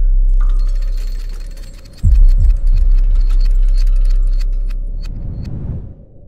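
Cinematic soundtrack sound design: a deep hit about two seconds in that dies away into a low rumble, over a held drone tone, with scattered crackling and tinkling high up that thins out near the end.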